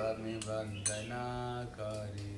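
Small brass hand cymbals (kartals) clinking several times in a chanting rhythm, over sustained group chanting and a steady low drone.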